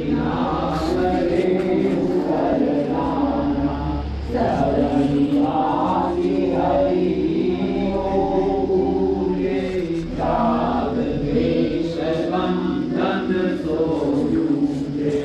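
A group of voices chanting a Hindu devotional hymn together in a steady, repeating melody.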